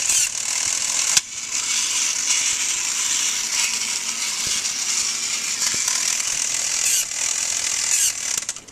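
A battery-powered toy robot's motor and plastic gear train running, a steady whirring, ratchet-like clatter, with one sharp click about a second in.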